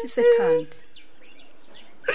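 A high, drawn-out wailing cry that falls away and stops about half a second in, followed by faint bird chirps in the background.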